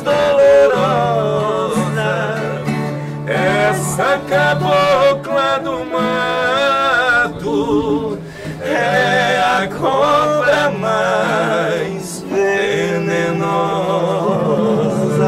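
Two men singing a sertanejo moda together, with vibrato on long held notes, over a strummed steel-string acoustic guitar and a viola caipira. The singing dips briefly twice, then carries on.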